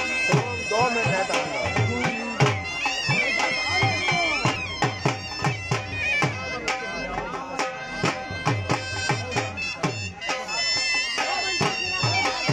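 Punjabi dhol drum beating a steady bhangra rhythm, about two strokes a second, under a loud wind-instrument melody with steady held notes, played live by a band for luddi dancing.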